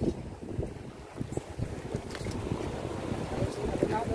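Wind buffeting the phone's microphone over water sloshing against a small outrigger boat: a steady low rush with faint scattered knocks.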